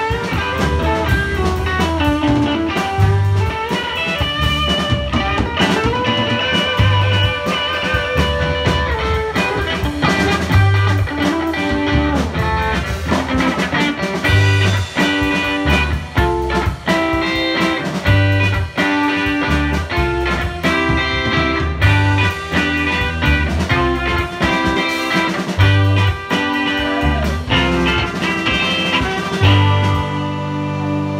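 Live band playing an instrumental passage with no singing: electric guitars, bass guitar, drum kit and saxophone.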